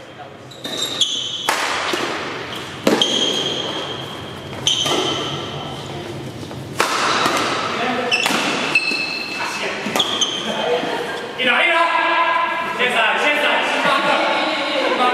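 Badminton rally in an echoing sports hall: rackets crack against the shuttlecock about every one to two seconds, with shoes squeaking on the court floor between shots. Near the end, spectators' voices rise over the play.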